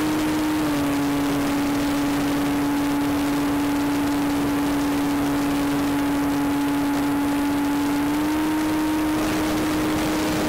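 Electric motor and propeller of a ParkZone T-28 RC plane, heard from a camera on board in flight: a steady whine over wind rush. The pitch dips slightly a little under a second in and comes back up near the end as the throttle changes.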